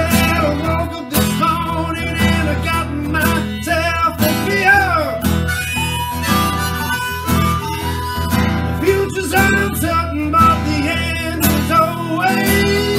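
Blues harmonica solo played into a microphone, with notes bent and sliding in pitch, over strummed acoustic guitar and electric guitar.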